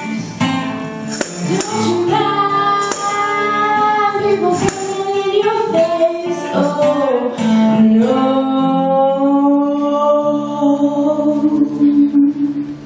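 A live folk band with several voices singing in harmony over tambourine and electric guitar. The tambourine drops out about halfway, and the voices hold long, sustained notes.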